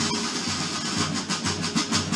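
Marching band of side drums playing together in a steady beat, starting suddenly.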